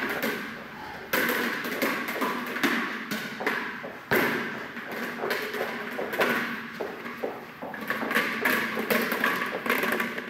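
Rubber ball bounced on the floor of a large hall: a series of thumps every second or two, each with a short echo.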